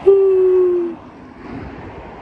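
A woman yawning aloud: one long held note about a second long that sinks slightly in pitch, from a tired speaker.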